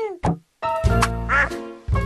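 Cartoon soundtrack: a falling nasal cartoon voice trails off at the start, followed by a short knock and a brief gap. Then comes about a second of music with a click and a short quacking squawk in it.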